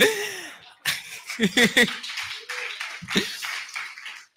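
An audience laughing, with some clapping mixed in, and a man's laugh at the start.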